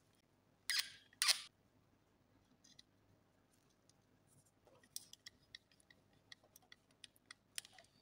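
Two short scraping rustles about a second in, then a run of faint, irregular small clicks and ticks from about five seconds on: a screwdriver and wire being worked into the terminal screws of a wall switch to bridge its neutral connections.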